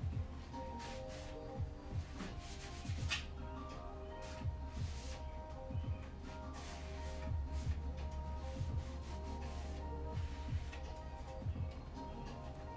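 Background music with held notes and a steady deep beat.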